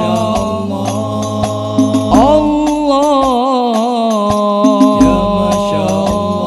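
Islamic shalawat sung in long, wavering melismatic lines by several voices together, over an al-Banjari ensemble of hand-struck frame drums (rebana) with many sharp slaps and deep bass-drum notes.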